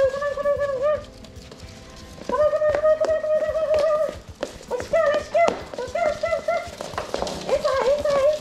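A high-pitched, sing-song calling voice repeating a short syllable in quick runs, with short pauses between the runs. Under it come scattered light clicks of puppies' claws on a hardwood floor.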